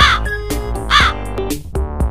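Background music with two loud crow-like caws about a second apart, each arching up and falling in pitch.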